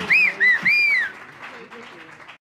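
A person in the audience whistling in cheer: three shrill notes, each rising and falling, within the first second, with faint applause underneath that dies away.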